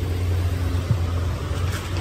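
Steady low rumble of a vehicle engine idling on the street, with one small knock a little under a second in.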